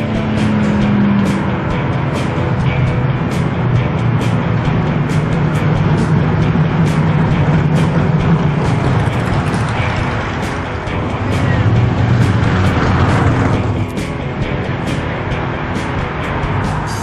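Classic American cars driving past one after another, their engines swelling as each passes close, loudest about halfway through and again a few seconds before the end. Music plays underneath.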